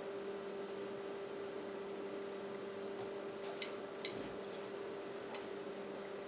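A few short, sharp clicks from an Elecraft KX3 transceiver as it is switched on and its front panel is worked, starting about halfway through, over a steady low hum.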